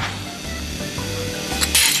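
Background music with a steady bass beat, and a short hissing burst of noise near the end.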